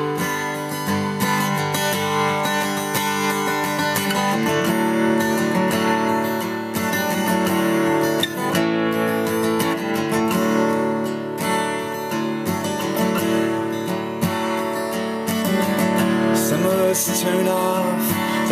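Acoustic guitar strummed, playing an instrumental passage of chords with a chord change about four seconds in.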